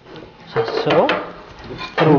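A metal utensil clinking and scraping against a stainless steel colander of fried beef, a few short clinks.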